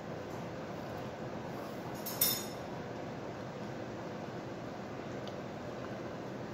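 A single short, ringing clink of tableware about two seconds in, over steady room noise.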